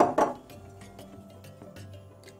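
Glass jars knocked against a stone countertop: two sharp knocks at the very start, a fraction of a second apart. Soft background music follows.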